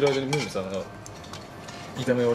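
Long wooden cooking chopsticks stirring bean sprouts in a metal frying pan, light clicks and scrapes against the pan.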